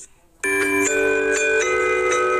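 After a brief quiet gap, a bell-like chiming jingle starts about half a second in: held ringing notes that change chord a couple of times.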